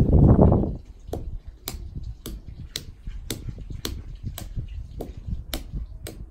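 A brief low rumble, then sharp, evenly spaced clicks about twice a second as a man works dried grain or kernels by hand on a stone floor beside a metal bowl.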